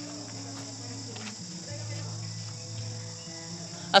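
Night insects chirring in a steady high-pitched chorus, with a faint low background sound beneath.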